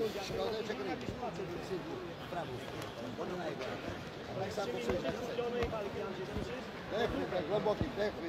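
Men's voices talking continually over arena noise, with several voices overlapping, and a scatter of short dull low thumps, more of them in the second half.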